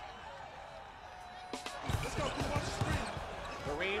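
A basketball being dribbled on a hardwood court: a run of bounces starting about two seconds in.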